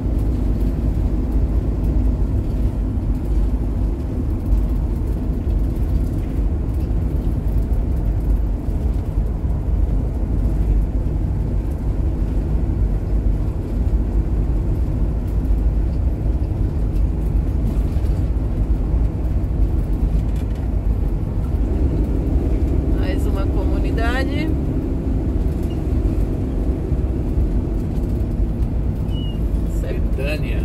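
Steady low road and engine rumble heard inside a motorhome's cab while it drives along a paved road.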